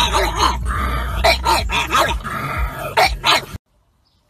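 Pug barking and giving drawn-out calls that rise and fall in pitch, loud and continuous, then cut off suddenly near the end.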